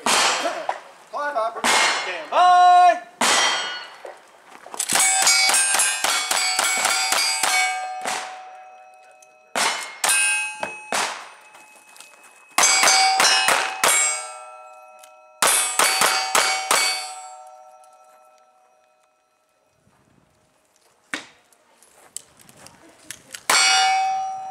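Steel cowboy-action targets struck by rapid strings of shots, each hit ringing on. Three quick strings come with short pauses between them, and the ringing dies away before a final sharp clank near the end.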